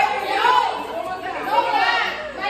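Overlapping chatter of a group of women talking at once, no single voice clear.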